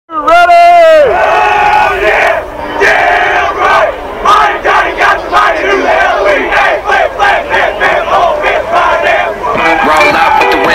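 Ballpark crowd cheering and shouting, opening with one loud drawn-out yell that drops in pitch about a second in.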